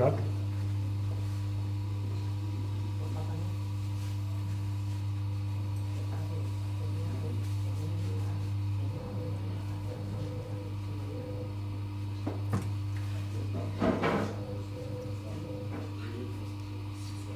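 Electric potter's wheel humming steadily as it spins, with wet clay being worked on it. There is a single click about twelve and a half seconds in and a brief voice sound about two seconds before the end.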